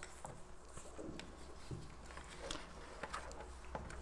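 Quiet room tone: a low steady hum with a few faint, soft clicks and rustles scattered through it.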